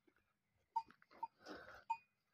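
Faint sounds from a small flock of Kangal sheep and their lambs grazing: a few short, quiet tinks about half a second apart and a faint bleat near the end.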